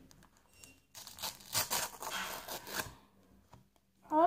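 A Panini sticker packet being torn open by hand: a run of rustling tears and crinkles of the wrapper from about a second in until about three seconds in.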